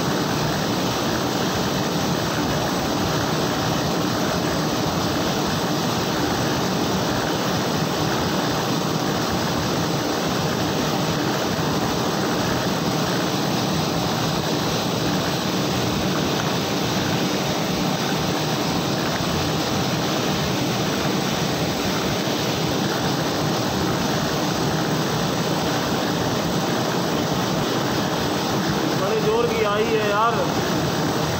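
Roll-to-roll printing machine running steadily as a printed web of film feeds over its rollers: a loud, even, continuous mechanical noise.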